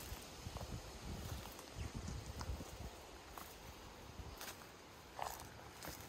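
Faint footsteps on dry orchard soil, uneven and soft, with a few light clicks.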